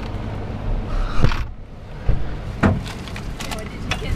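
Inside a vehicle cabin with the engine idling as a steady low rumble. A sharp knock comes about a second in, then scattered clicks and knocks of handling and movement in the seats.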